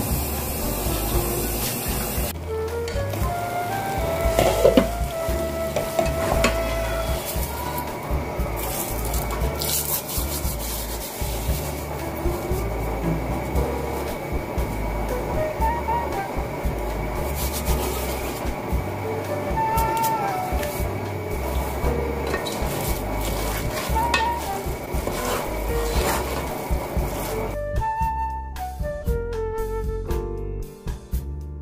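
Bulgur sizzling in a hot pot as it is stirred with a wooden spoon, with small scraping and clicking sounds. A steady hiss fills the first two seconds, and music comes in near the end.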